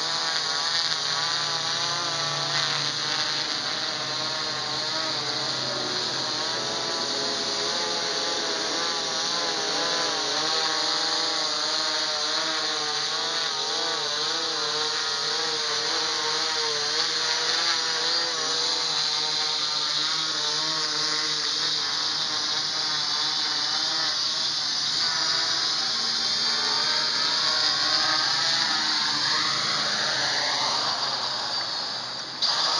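Quadcopter's electric motors and propellers whining in a descent under automatic landing. The pitch wavers up and down as the motor speeds are constantly adjusted. Near the end the pitch sweeps as it touches down.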